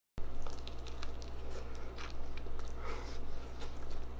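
A person biting into a sandwich on a bun and chewing it, with small scattered crunches and mouth clicks over a steady low hum.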